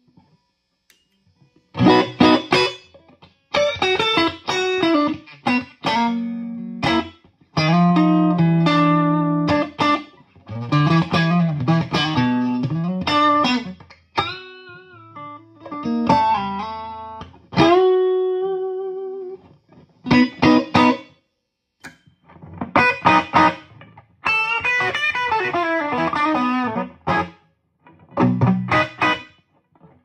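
Electric guitar played through a modded JTM45-clone tube amp head and a 4x12 speaker cabinet: riffs and held chords in short phrases with brief pauses between, starting about two seconds in.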